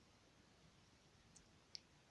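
Near silence: room tone, with two small clicks about a second and a half in, the second one sharper.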